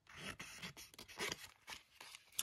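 Scissors cutting through a paper sticker sheet: a few faint, short snips.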